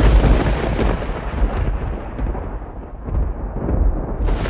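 A loud, deep rumble that starts suddenly and eases off somewhat in the middle, like a thunder or explosion sound effect in an opening title sequence.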